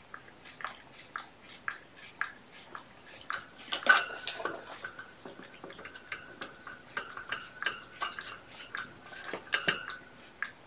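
A kitten eating from a bowl: irregular wet clicks and crunches of chewing, with light knocks against the bowl, loudest about four seconds in.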